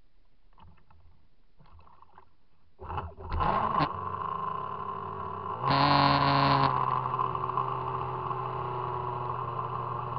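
Revolt 30 brushless electric RC speedboat heard from its own bow camera: quiet at first. About three seconds in, the motor starts with a few short throttle bursts, then settles into a steady-pitched whine over water noise, surging louder for about a second near the middle.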